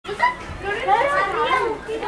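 Children's voices talking and calling out, several overlapping at times.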